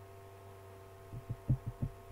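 A steady low electrical hum with faint fixed tones. From about a second in, a quick, irregular run of about six soft, low thumps or taps sounds over it.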